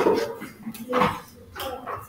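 Short bursts of people's voices and laughing, about a second apart.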